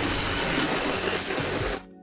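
Water from a pistol-grip garden hose nozzle spraying onto a travel trailer's siding and roof edge, a steady hiss. It cuts off suddenly near the end, where soft background music comes in.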